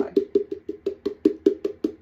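Palm repeatedly slapping the bottom of an upturned plastic Mod Podge jar to knock the glue out, an even run of about a dozen knocks, about six a second, each with a short ring.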